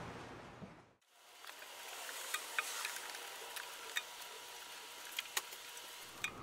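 Faint rubbing of a damp paper towel wiping the glass of an empty aquarium, with scattered small clicks and taps. The sound drops out completely for a moment about a second in.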